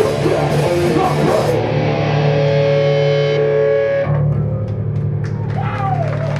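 A live metallic hardcore band plays with distorted electric guitar and drums. About a second and a half in, the cymbals and drums stop and a guitar chord rings out with held notes. Around four seconds in, only a low amp buzz and some ringing guitar noise remain as the song ends.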